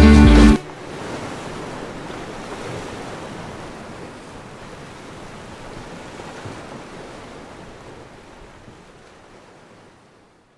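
A song with singing stops abruptly about half a second in, leaving a soft wash of sea waves that fades out slowly.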